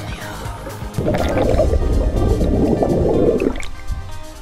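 Scuba diver exhaling through a regulator underwater: a gurgling rush of bubbles that starts about a second in and runs for about two and a half seconds.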